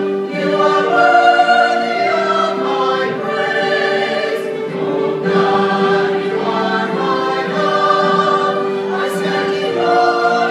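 Church choir singing a hymn in parts, with long held notes.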